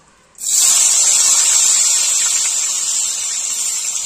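Paneer cubes dropped into hot oil in a kadai, sizzling loudly. The sizzle starts suddenly about half a second in and holds steady, easing only slightly toward the end.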